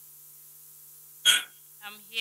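A short, sharp catch of breath, like a sob or hiccup, from someone crying close to the microphone, about a second in, then the start of a voice just before the end.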